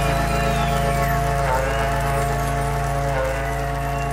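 A berrante, the Brazilian cattle-herder's ox horn, blown in a long held call with small dips in pitch about a second and a half in and again near the end. It sounds over the band's sustained closing chord with accordion.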